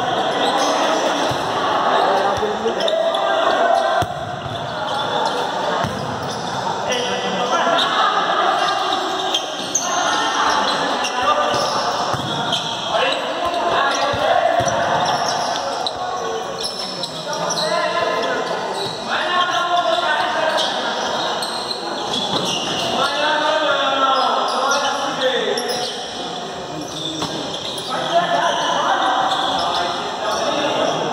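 Futsal ball being kicked and bouncing on a hard indoor court, with short knocks echoing in a large gymnasium, under near-continuous shouting voices of players and spectators.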